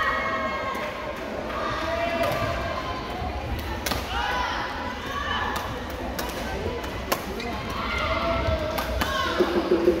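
Badminton hall din during doubles play: overlapping voices of players and onlookers across several courts, with scattered sharp knocks of rackets striking shuttlecocks and shoes on the court floor. One knock stands out about seven seconds in.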